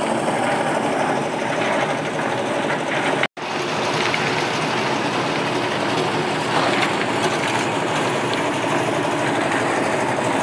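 An engine running steadily at a constant speed, a dense drone with several steady tones. The sound drops out completely for an instant about three seconds in, then carries on unchanged.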